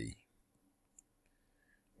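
Near silence with a single faint click about a second in.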